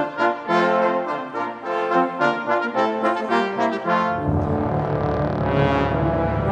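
Brass quintet of trumpets, French horn, trombone and tuba playing a lively Renaissance canzona in short, detached notes. About four seconds in, the music changes to a loud, low, sustained chord that is held.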